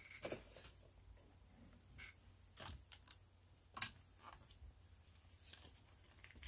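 Faint, scattered taps and scrapes of a hand handling and turning a cardboard toy box with a plastic window on a tabletop.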